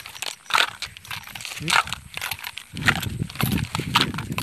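Footsteps through grass: a few irregular soft knocks with rustling, and a low rumble joining in from near three seconds in.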